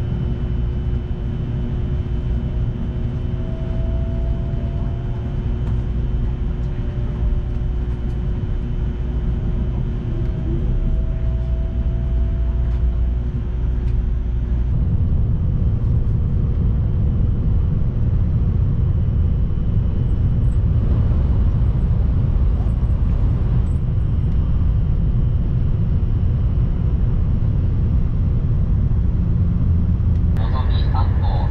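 Cabin noise inside a Shinkansen bullet train: a steady rumble with a faint rising whine twice as it pulls along the platform. About halfway in it becomes a louder, steady rumble at close to 300 km/h.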